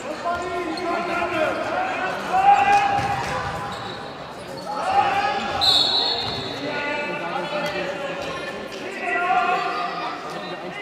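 Handball bouncing on a sports hall floor during play, amid overlapping shouts and calls from players and spectators, with a short high whistle blast a little past halfway.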